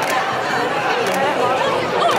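Crowd of walkers and runners chattering as they pass, many voices overlapping in a steady babble with no single clear speaker.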